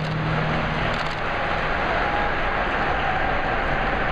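Programme music ending in the first half-second, followed by steady applause echoing in the ice arena.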